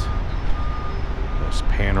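A vehicle's reversing alarm beeping: three short, single-pitched high beeps, spaced a little under a second apart, over a steady low rumble.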